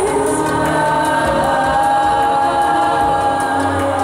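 Youth choir singing in full harmony; the whole choir comes in right at the start, low voices filling out the chord beneath the upper parts.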